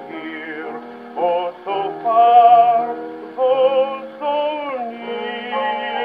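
Saxophone playing a sustained melody with strong vibrato over held orchestral accompaniment, from a 1925 Victor 78 rpm record played on a phonograph; the sound is cut off above the upper treble, as old records are. The phrase moves through several notes and ends on a long held note near the end.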